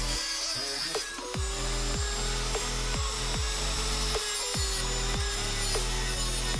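Handheld rotary tool with a cut-off disc grinding through the end of a steel bolt, a steady whine and hiss, heard under electronic music with a heavy repeating beat.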